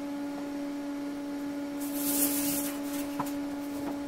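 Steady electrical hum at a single low pitch with faint overtones, with a brief hissy rustle about two seconds in.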